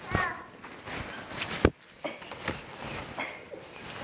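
Fabric pop-up play tunnel rustling, with a few sharp knocks and scrapes as it is handled and crawled through, the loudest two close together about a second and a half in. A brief child's vocal sound is heard at the very start.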